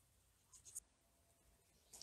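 Near silence: room tone, with a few faint brief ticks a little over half a second in.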